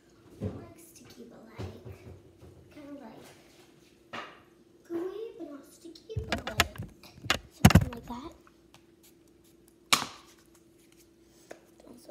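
A child's voice, too indistinct for words, with a cluster of loud knocks and clatter about six to eight seconds in and a single sharp click near ten seconds, over a steady low hum.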